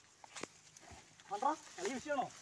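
Quiet movement through dry grass and brush with a sharp snap about half a second in, then short wordless voice sounds from a person in the second half.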